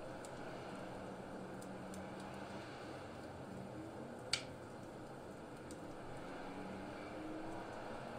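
Quiet room tone with a faint steady low hum, broken by a single short click about four seconds in.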